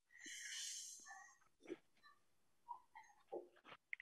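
A faint breathy exhale, like a sigh, lasting about a second, followed by a few quiet, short voice-like sounds.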